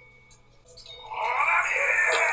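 Quiet for about a second, then a man's voice in Japanese shouting a name loudly and holding it, over soft background music: dubbed-over television drama dialogue.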